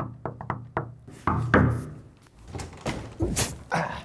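Knuckles rapping on a glass pane, about five quick knocks. These are followed by louder, irregular thumps and clatter.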